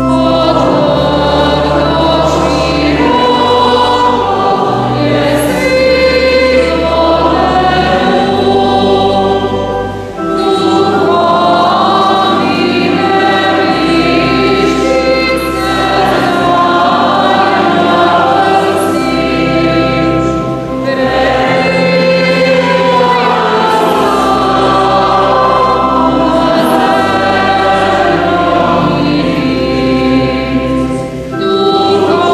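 Church choir singing a hymn over sustained low accompanying notes, phrase by phrase, with brief breaths between phrases about ten and twenty-one seconds in.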